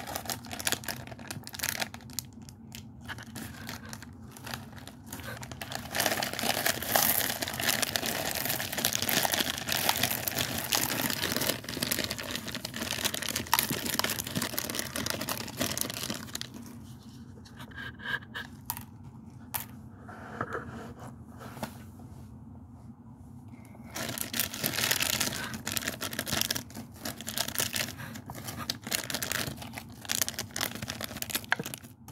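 Plastic Reese's Pieces candy wrappers being torn open and crinkled by hand as the candies are shaken out. The crinkling is loud for several seconds, eases off for a while in the middle, then picks up again near the end.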